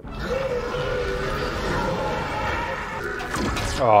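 Animated film soundtrack: dramatic orchestral score over a continuous bed of electrical crackling and sparking as the giant robot is electrocuted. A short 'oh' from a viewer comes right at the end.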